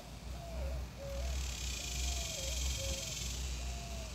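Outdoor ambience: wind rumbling on the microphone, with a steady high hiss coming in about a second in and a few faint, short wavering tones.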